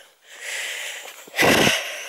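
A woman's breathing close to the microphone while she walks: a drawn breath, then a louder, short puff of breath about a second and a half in.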